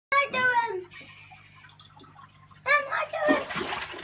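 Water splashing and pouring into an aquarium as live bait is tipped in, a dense hiss of splashing in the last second. Before it a high-pitched voice calls out briefly twice, over a steady low hum.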